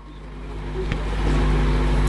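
Low engine-like rumble with a few steady low hums, swelling over about the first second and then holding steady, with a single sharp click about a second in.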